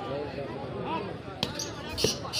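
Spectators chattering around the court, with one sharp smack of a volleyball being hit about three-quarters of the way through.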